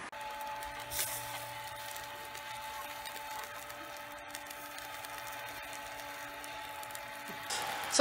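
Small electric rotisserie motor running with a steady whine as it turns a charcoal barbecue spit. The sound cuts off shortly before the end.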